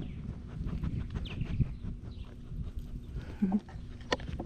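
A dog panting and snuffling right up close to the microphone.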